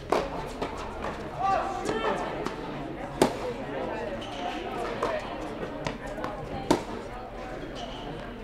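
Tennis balls struck by racquets and bouncing in a rally on an indoor court, sharp hits ringing in the hall. The loudest hits come about three seconds in and near the end, with fainter ones between, over murmuring voices.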